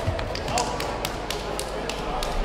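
Irregular sharp taps and knocks, about ten in two seconds, from a kickboxing bout on mats in an echoing sports hall, mixed with short shouted calls.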